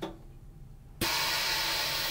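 Chamber vacuum sealer letting air back into its chamber: a steady rushing hiss that starts suddenly about a second in. This marks the end of the vacuum-and-seal cycle on a moisture-barrier bag.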